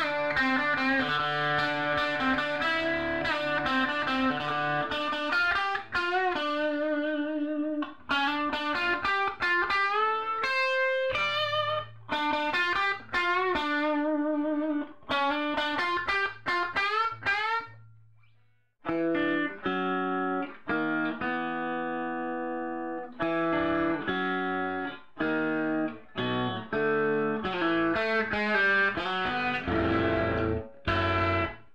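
Electric guitar played through a 1960 Fender Tweed Deluxe tube amplifier. It plays single-note lead lines with string bends and vibrato, lets one note ring and die away a little past halfway, then moves to held chords and more picked phrases.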